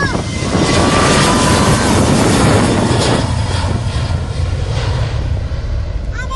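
Jet engines of a Ryanair Boeing 737-800 at takeoff power as the airliner rolls down the runway and lifts off. A loud roar with a faint steady whine, loudest in the first three seconds and easing after that.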